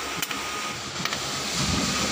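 Steady background hiss with a faint thin tone and a few light clicks.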